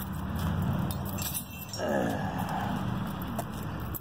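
Steady low rumble of highway traffic nearby. About two seconds in, a louder sound falls in pitch over it.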